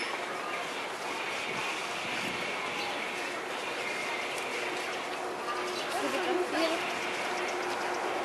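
Steady outdoor background noise with faint, distant people's voices, one voice a little clearer about six seconds in.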